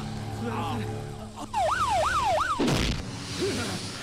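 A siren wailing up and down three times in quick succession, followed a moment later by a sudden loud swooshing hit, over a low musical drone.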